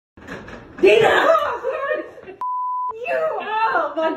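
Loud, agitated voices with a steady half-second censor bleep a little past halfway, covering a word, then the voices go on.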